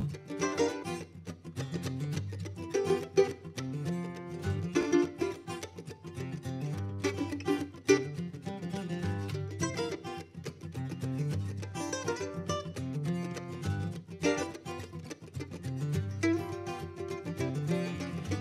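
Acoustic guitar and mandolin playing a song's instrumental introduction, with many quick plucked notes over a steady rhythm.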